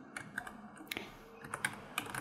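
Typing on a computer keyboard: a quick, irregular run of quiet key clicks.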